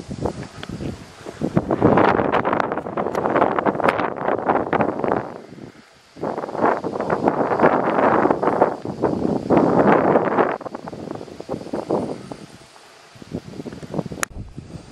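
Gusty wind buffeting the microphone and rustling the grass: two long surges of rushing noise, the first dropping away suddenly at about the middle, the second fading out in the last few seconds.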